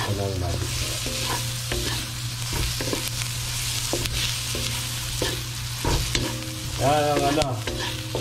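Pork, garlic and onion sizzling in oil in a stainless steel wok. They are stirred with a wooden spatula that scrapes and clicks against the metal pan.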